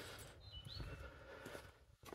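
Quiet outdoor background with a faint bird call about half a second in: a few short high notes, one rising in pitch.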